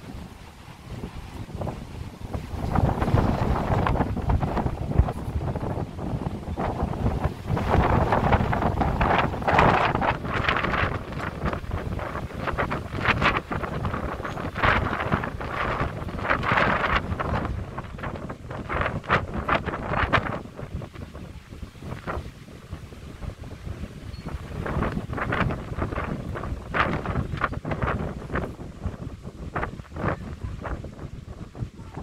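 Wind buffeting the microphone in uneven gusts, picking up about two seconds in, strongest through the first two-thirds and easing off with further gusts near the end.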